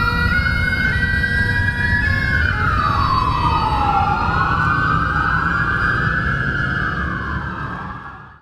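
Police siren wailing in slow rising and falling sweeps over a low engine rumble. Bagpipes carry on faintly under it for the first couple of seconds, and the sound fades out at the very end.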